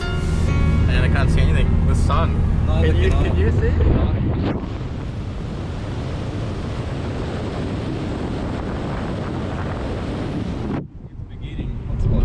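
Audi S3 driving on the open road: a steady low engine drone inside the cabin for the first few seconds, then wind and road noise rushing over a bonnet-mounted camera's microphone, which cuts off suddenly near the end.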